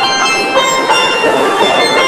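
Steel band music: pans playing a bright tune of ringing, sustained notes without a break, from a live concert recording.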